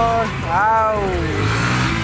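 Motorcycle engine revved, sweeping up and then falling in pitch, then running lower and steadier as the bike rides off.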